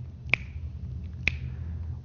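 Two sharp finger snaps about a second apart, keeping the beat of the dance count, over a low steady hum.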